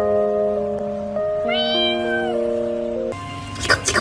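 A cat meows once, a single arched call about a second and a half in, over background music of held notes. Near the end the music stops and a few sharp clicks follow.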